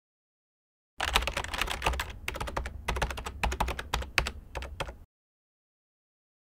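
Computer keyboard typing: a quick run of key clicks starting about a second in, with a short pause near two seconds, stopping about a second before the end.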